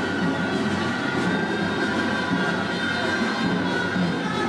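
Festival street band music: wind instruments holding sustained high notes over a dense, busy lower layer.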